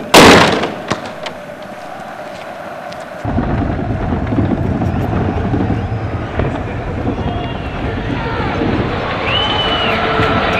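A football kicked hard: one loud, sharp thud right at the start. After a few seconds a steady low outdoor rumble takes over.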